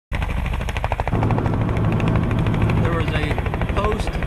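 Helicopter rotor running, a rapid, even beat of blade slap over a low drone, growing louder about a second in.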